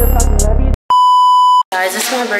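Electronic music cuts off sharply, followed by a single steady electronic beep tone lasting under a second, the kind used as a censor bleep. Voices start right after it.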